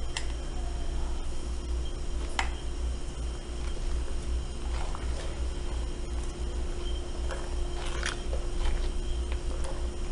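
A long plastic spoon stirring a thick, lumpy soap paste in a glass pot, with a few sharp clicks of the spoon against the glass, over a steady low hum.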